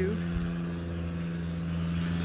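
A machine running with a steady low hum that holds one even pitch throughout.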